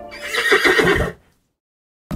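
A horse whinny sound effect lasting about a second, with a wavering pitch, ending abruptly in silence.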